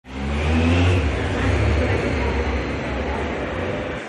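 A motorbike engine passing close by, its note rising slightly as it goes past about a second in and then fading away.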